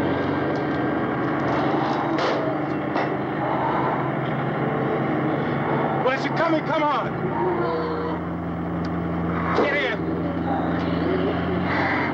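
Pickup truck engine running steadily. Brief pitched voices break in about six seconds in and again near ten seconds.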